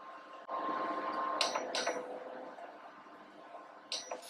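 Frog legs frying in canola oil in a cast iron skillet, a steady sizzle, with two sharp clicks around the middle of it. Another click near the end, as a hand presses the induction cooktop's control panel.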